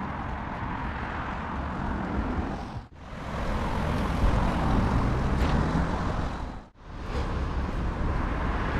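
Street noise with road traffic going by, a steady rumbling hiss that breaks off sharply twice, about three and seven seconds in.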